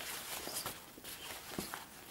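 Rustling and soft flapping of a whole sheep or goat grain leather hide being lifted and folded by gloved hands, with a soft knock about one and a half seconds in.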